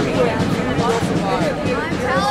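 Crowd of many voices talking and calling out over one another, steady throughout, with some drawn-out, sung or chanted tones among them.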